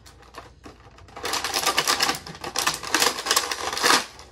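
Clear plastic packaging bag crinkling and crackling loudly as it is squeezed and handled, starting about a second in.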